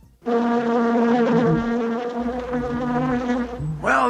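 A flying insect buzzing: a steady drone whose pitch wavers slightly. It starts about a quarter second in and stops just before the end.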